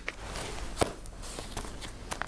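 Sheets of paper being handled, a soft rustle with a couple of light clicks, over faint room noise.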